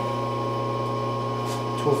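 Powered-up Supermax YCM-16VS CNC milling machine humming steadily: a low drone with a thin high whine over it.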